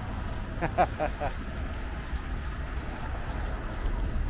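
A steady low outdoor rumble with a few short, distant voice-like calls about a second in.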